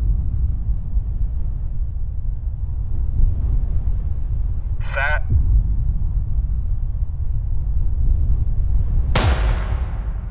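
A steady low rumble, then a single starter's pistol shot near the end that starts the race, sharp and loud with a long echoing tail.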